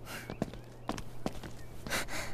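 Footsteps on stone paving: a run of unhurried steps, about two a second, over a faint steady low hum.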